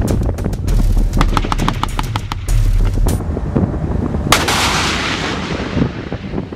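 A TOW anti-tank missile fired from a Humvee-mounted launcher: a sudden loud blast about four and a half seconds in, then a rushing hiss that fades as the missile flies off. Before it come rapid sharp cracks over the low rumble of the Humvee's engine.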